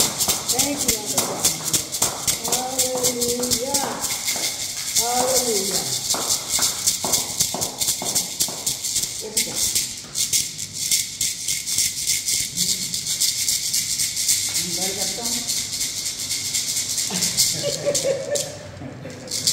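Beaded gourd shaker (shekere) shaken in a fast, steady rhythm, its net of beads rattling against the gourd throughout. Voices sing over it in the first few seconds and again briefly near the end.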